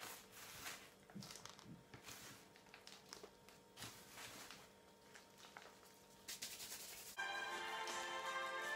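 Faint rustling and soft pattering of orchid potting mix being scooped by gloved hands and dropped into a plastic pot, with occasional crinkles. Background music starts abruptly near the end.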